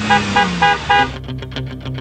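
A car horn giving four short, quick beeps in the first second, about four a second, over background music.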